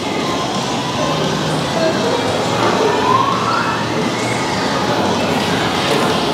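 A siren wailing, its pitch rising slowly midway through, over a steady background of room noise.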